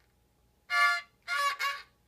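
A small child's violin bowed in three short, steady notes: one a little under a second in, then two close together near the end. These are a beginner's bow strokes during a lesson.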